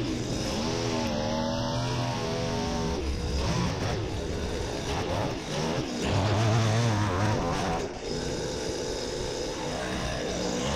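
String trimmer engine running as the line cuts grass, its speed rising and falling, with brief dips about halfway through and again near the end.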